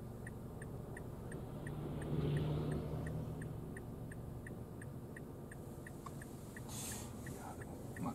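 A car's turn-signal indicator ticks evenly, about three clicks a second, over the low hum of the Mazda Biante's engine idling, heard from inside the cabin. The hum swells briefly about two seconds in.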